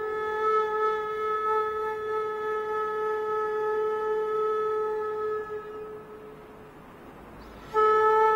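A flute holds one long, steady note that fades away after about five and a half seconds. After a short lull, a new held note comes in just before the end.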